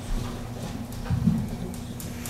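Meeting-room noise: a few dull low thumps, one right at the start and a louder one just after a second in, over a steady electrical hum, typical of papers and objects handled on a desk near the microphones.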